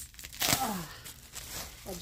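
The wrapping on a bolt of fabric rustling and crinkling as it is pulled open, loudest in a sharp rustle about half a second in. A brief falling vocal sound comes with it.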